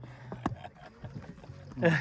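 Low steady hum of a boat's motor with a few faint clicks and knocks, and a brief vocal exclamation just before the end.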